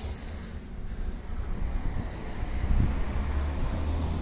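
Low, steady wind rumble buffeting the microphone.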